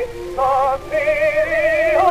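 Acoustic-era Victor 78 rpm disc recording of an Italian opera duet for soprano and tenor with orchestra: sustained sung notes with wide vibrato over a lower held line, the melody changing note about half a second and again about a second in.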